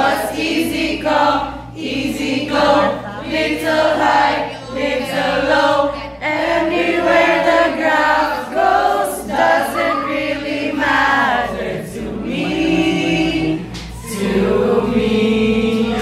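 A group of teenage students singing together in chorus, phrase after phrase with short breaks between lines.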